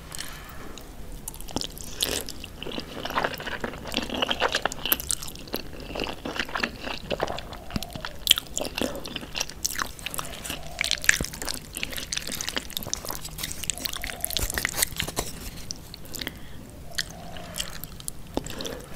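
Close-miked chewing of jajangmyeon (thick noodles in black bean sauce): wet mouth sounds with a steady run of small clicks.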